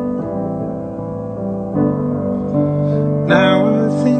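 Sustained piano chords played slowly, changing every second or two, with a sung note coming in near the end.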